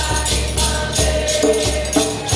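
A group of Puyanawá voices singing a chant together, backed by a hand drum beating, strummed acoustic guitar and a shaken rattle.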